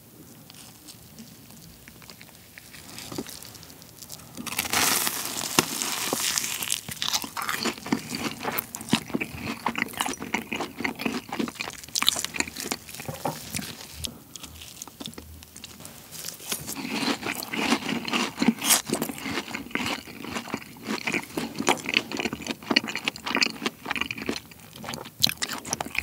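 Close-miked crunching and chewing of a sauce-dipped deep-fried cheese ball with a crisp glutinous-rice crust: a sharp crunchy bite about four seconds in, then chewing with many small crackles. After a quieter stretch, another bite and more crunchy chewing follow.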